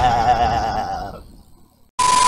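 Warbling, bleat-like comic cry from an intro sound effect, its pitch quivering as it fades away within about a second, then silence.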